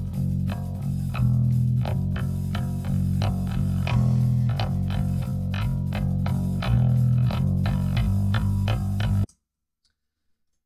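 Bass guitar recording played back after being time-stretched in Ableton Live's Tones warp mode, with a steady run of low plucked notes. It sounds off because Live warped the clip at the wrong tempo. Playback cuts off suddenly about nine seconds in.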